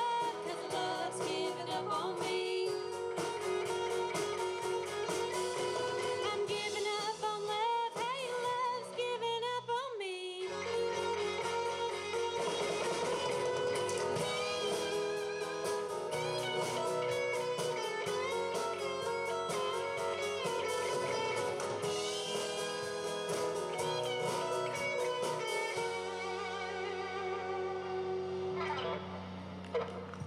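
Live band playing: electric guitars, bass and drum kit, with a woman singing at first. After about ten seconds an electric guitar takes the lead with bending notes, and the song winds to its close near the end.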